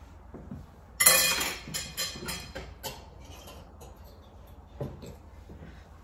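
Metal kitchenware clattering: a sudden metallic clatter about a second in rings and fades, followed by a few lighter clinks and knocks as the vegetable skewers are handled.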